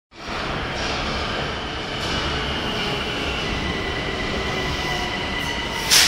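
Metro train arriving at an underground station platform: steady running noise from the wheels on the rails with a sustained high squeal, getting loudest near the end as the cars sweep past.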